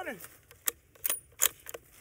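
A rifle's action being worked to chamber another round: four sharp metallic clicks and clacks close together, starting about a third of the way in, one with a brief high ring.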